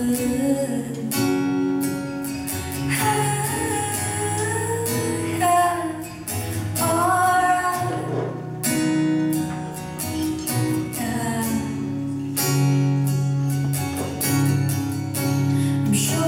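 A woman singing live into a microphone, accompanying herself on a strummed acoustic guitar, with long held notes.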